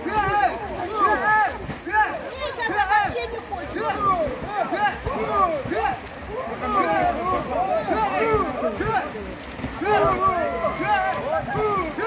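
Several people's voices talking and calling out over one another, with water splashing in the background.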